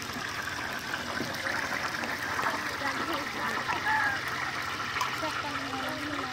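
Battered onion fritters (piaju) sizzling steadily in a wok of hot oil, with voices chatting in the background.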